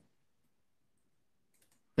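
Near silence on a video-conference line, broken by a few faint clicks near the end.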